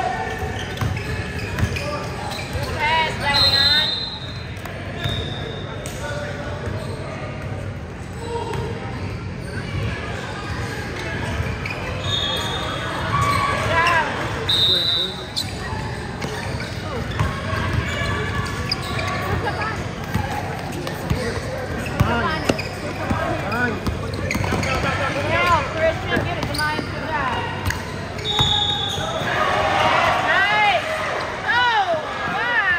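Basketball dribbling on a hardwood gym floor with many short sneaker squeaks, over shouts from players and spectators, all echoing in a large hall.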